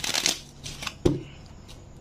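A tarot deck being shuffled by hand: a quick flutter of cards at the start, a few small clicks, then a single sharper knock about a second in.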